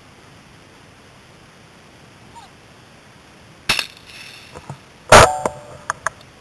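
A single 12-gauge shot from a Browning Silver semi-automatic shotgun about five seconds in, very loud and sudden with ringing after it. A sharper, quieter clack comes a little over a second before it.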